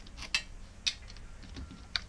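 A few light metallic clicks and ticks as a small screwdriver backs out a screw holding the reflector in a metal-framed LCD panel.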